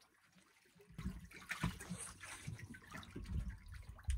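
Quiet for about the first second, then small irregular splashes and lapping of seawater as a swimmer moves in the water at a boat's stern.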